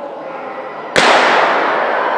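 A single sharp starting shot about a second in that sets off a hurdle race, ringing in a large sports hall. It is followed by a steady wash of hall noise, louder than the quiet hall before it.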